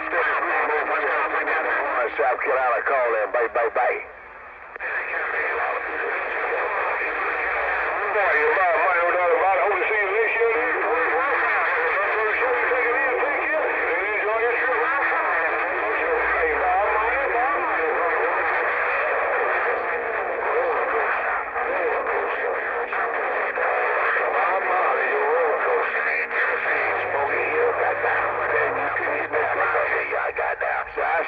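Cobra 148 GTL CB radio's speaker receiving distant stations: thin, narrow-band radio voices that run on unbroken and too garbled to make out, with a short drop-out about four seconds in.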